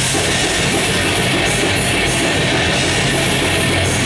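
Metal band playing live: electric guitars and a drum kit in a loud, dense, unbroken wall of sound.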